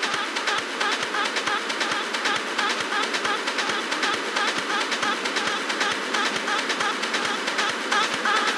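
Dark techno with its bass filtered away: a steady, fast ticking percussion pattern over a dense hissing texture.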